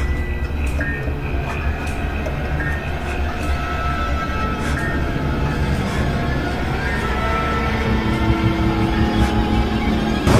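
Horror film soundtrack: a low, rumbling drone with high tones held over it, building slowly in loudness.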